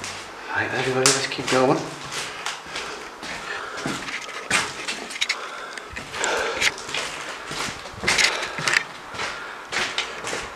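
Footsteps crunching and knocking over plaster debris on a hallway floor, a string of short sharp sounds, with indistinct voices in the first couple of seconds.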